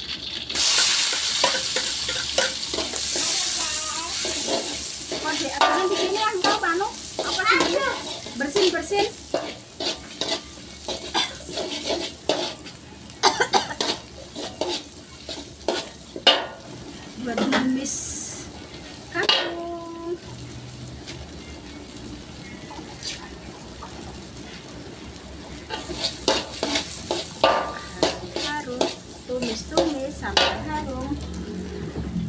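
Chopped spices and chilli tipped into hot oil in an aluminium wok, sizzling loudly about a second in and slowly dying down. A metal spatula scrapes and clacks against the wok as they are stir-fried, quieter for a while near the end.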